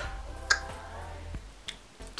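A sharp click about half a second in, then a fainter click near the end, over a low steady hum.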